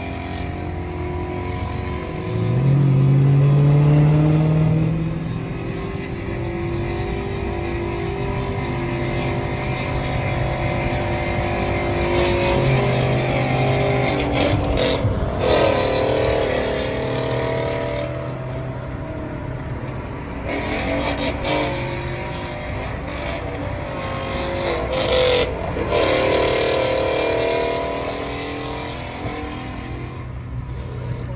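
Dodge HEMI V8 heard from inside the cabin, surging hard with a rising note about two and a half seconds in, then running at highway speed with the revs swinging up and down several times in the second half, along with a few short sharp noises.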